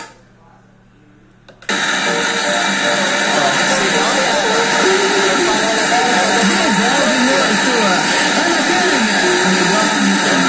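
Inova RAD-8535 portable Bluetooth speaker playing a song with vocals at very high volume. The sound cuts out at the start, a click comes after about a second and a half, and the music comes back abruptly and runs on super loud.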